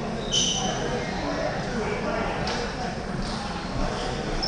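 Indistinct chatter of several voices in a large sports hall, with a brief high-pitched squeak about a third of a second in.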